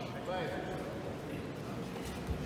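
Indistinct voices in a large sports hall, with one short raised voice about half a second in over steady background chatter.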